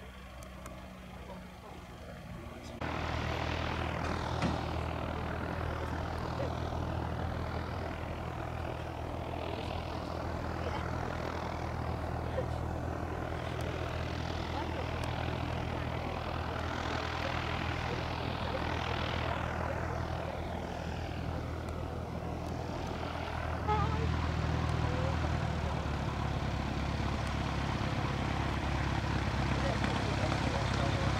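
An engine running steadily at a distance, a low hum under a hiss that sweeps slowly up and down in pitch. It comes in suddenly about three seconds in and steps louder with about six seconds left.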